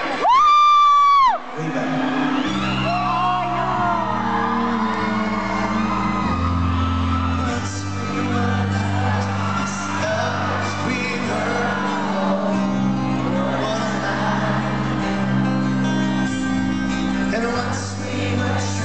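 A loud, high-pitched scream from a fan close to the microphone lasts about a second. Then a live acoustic band starts playing: acoustic guitars and keyboard hold chords that change every second or two, with singing and crowd voices over them.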